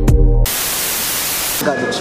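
Beat-driven background music with heavy bass cuts off about half a second in and gives way to about a second of loud, even static hiss, a white-noise transition effect at a cut between shots.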